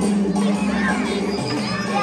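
Children shouting and cheering over music with a steady held bass; high, swooping young voices join in from about a second in.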